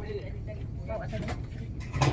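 Faint, indistinct voices of people talking in the background, over a steady low rumble.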